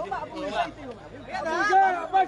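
People talking and chattering, voices overlapping.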